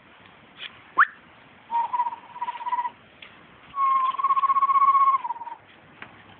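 A person whistling: a quick upward sweep, then two held warbling notes, the second longer and dropping in pitch at its end.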